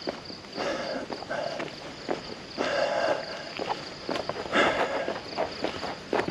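Footsteps of a person walking on a road, irregular crunching steps, over a steady high trill of crickets.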